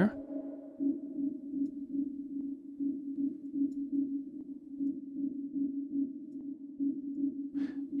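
Sampled atmospheric synth pad playing through a heavily closed low-pass filter, while its filter envelope is being adjusted: a dark, steady sustained tone that pulses gently in level.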